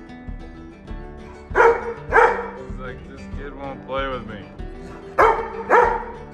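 A Labrador barking: two barks about a second and a half in, then two more near the end, over background acoustic-guitar music with a steady beat.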